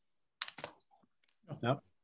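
Clicking at a computer: two sharp clicks close together about half a second in, then a few faint ones, before a voice says "No" near the end.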